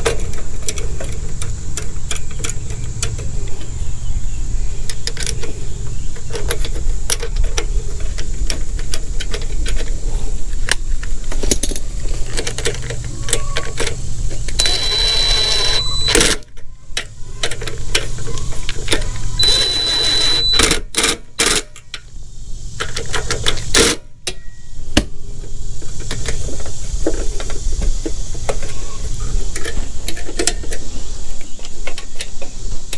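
Clicks and clinks of metal parts and tools being handled while a new carburetor is fitted to a small engine. A cordless drill/driver runs twice in short bursts with a steady high whine, about 15 and 20 seconds in, fastening the carburetor in place.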